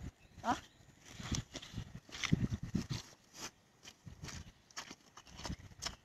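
Footsteps of rubber boots on wet grass and soft ground: a string of short, uneven thuds with rustling of grass.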